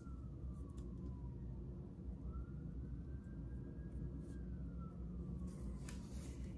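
A faint siren wailing slowly: its pitch falls, rises again about two seconds in, holds, and falls once more near the end, over a low steady hum. A few faint clicks sound alongside it.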